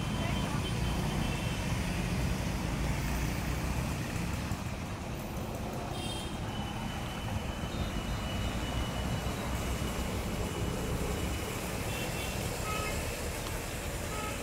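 Outdoor background noise: a steady low rumble like distant road traffic, with a few short, thin, high chirps here and there.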